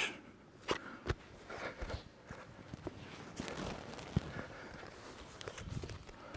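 Faint shuffling and soft knocks of two grapplers' bodies and bare feet moving on foam training mats, with a few sharper taps scattered through it.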